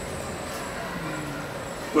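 A pause in a man's speech into a microphone: steady background noise of a gathered crowd, with faint murmuring voices.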